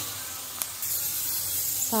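Blanched almonds deep-frying in hot oil in a pan, a steady sizzle that brightens about a second in, with two light clicks near the start. The almonds are being fried just until they begin to turn golden.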